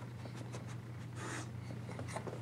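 Faint scratchy rustling and small clicks with a short sniffing snort from a dog about a second in, over a steady low hum.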